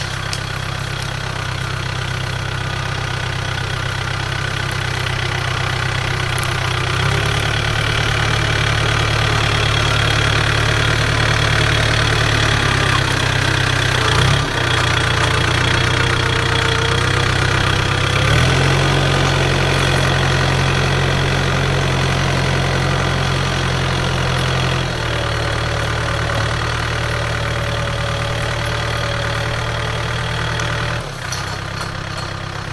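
New Holland T3030 tractor's diesel engine working steadily under load while pulling a reversible moldboard plough through the soil. It grows louder as the tractor comes close, then fades as it moves away. The engine note shifts in steps several times.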